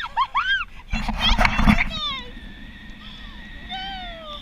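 Women shrieking and laughing in high, sliding squeals while being dipped toward the water on a parasail, with a loud rush of noise about a second in.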